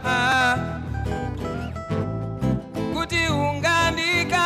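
Live band music: a man singing over guitar accompaniment, with a sung phrase at the start, an instrumental stretch, and singing coming back in about three seconds in.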